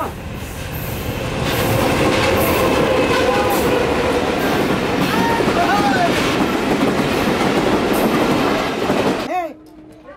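Passenger train passing close by at speed: a loud, steady rush of wheels and coaches on the track with repeated clatter. It stops abruptly a little after nine seconds in.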